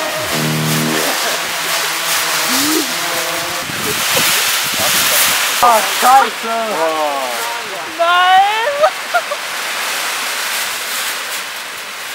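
The aluminium-foil envelope of a homemade hot-air balloon rustling and crinkling with a steady, rushing, crackly noise as it collapses to the ground. Music stops about a second in, and a man cries "Oh, nein" and "nein" midway.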